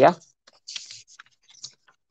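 Pages of a book being leafed through: a brief, faint paper rustle a little under a second in, with a few soft scattered ticks.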